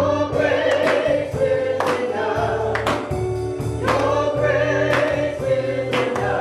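Live gospel worship music: singing over electronic keyboard and a drum kit, with a steady bass line and drum and cymbal hits about once a second.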